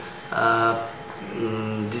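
A man's voice drawing out two long syllables at a level pitch, with short gaps between them.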